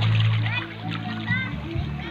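Water splashing in the shallows and children's voices, over music with a steady low bass line.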